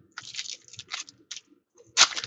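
Trading-card pack wrapper crinkling and tearing as hands pull it open: a string of short, irregular crackles with a brief pause near the end.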